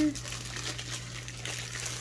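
Soft rustling of a thin clear plastic sleeve as a rolled canvas is slid out of it, over a steady low hum.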